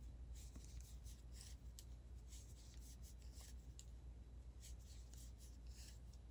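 Near silence with faint, scattered light clicks and rubbing from wooden knitting needles and yarn as stitches are worked.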